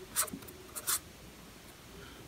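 A pen writing Arabic script on paper, with two short scratchy strokes in the first second.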